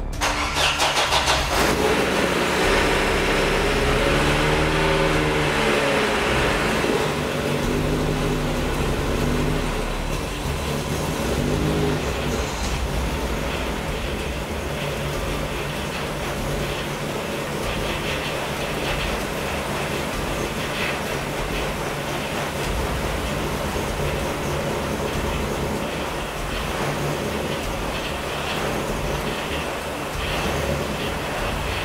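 Chevrolet Corsa 2.0 eight-valve four-cylinder engine starting, its revs rising and falling a few seconds in, then settling to a steady idle. It runs with an odd noise that the owner only noticed afterwards in the footage, shortly before the engine seized.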